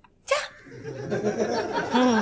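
A woman laughing: a short sharp catch of breath, then a run of quick giggling that swells and trails off in a falling note.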